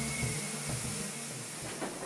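Steam locomotive letting off steam: a steady hiss that slowly fades.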